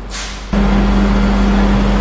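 A short hiss, then a loud steady low hum that starts abruptly about half a second in and cuts off suddenly at the end.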